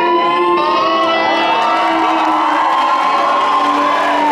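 A live band holds sustained electric guitar and keyboard chords while the audience cheers.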